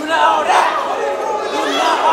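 Several men shouting and hollering over one another, a loud jumble of raised, overlapping voices.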